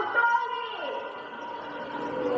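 Speech: a voice for about the first second, then a quieter stretch with only faint steady tones underneath.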